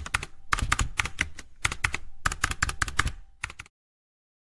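Computer keyboard typing sound effect: rapid key clicks in quick runs with short pauses. It stops suddenly just before the end.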